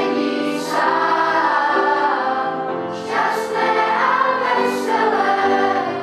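Children's choir singing with long held notes, in two phrases; the second begins about three seconds in.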